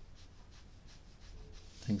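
A fineliner pen drawing on paper: faint, scratchy strokes of ink lines over a low steady room hum. A man's voice starts a word at the very end.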